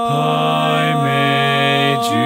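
One man's multitracked a cappella barbershop harmony singing a tag with the baritone part left out: three voices (tenor, lead and bass) holding close-harmony chords and moving to a new chord about every second.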